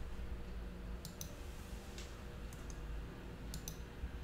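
Sharp clicks, about seven of them and mostly in quick pairs, over a steady low hum.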